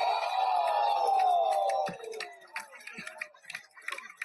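A voice holding one long, falling vocal note for about two seconds, then a scatter of light clicks.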